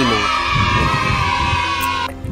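A voice holding one long high note, sliding slightly down in pitch, over background music with a low beat.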